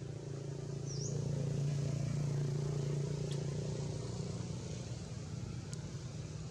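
Steady low engine hum of a motor vehicle going by, swelling over the first two seconds and then slowly fading. A short high chirp sounds about a second in.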